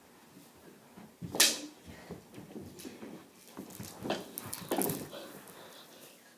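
Knee hockey on carpet: a sharp, loud hit of a mini hockey stick about a second and a half in, then a cluster of knocks and scuffles between four and five seconds.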